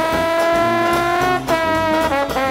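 A New Orleans-style jazz band with brass playing live. One long note is held, rising slightly in pitch, until about a second and a half in, then the band moves on to quicker notes.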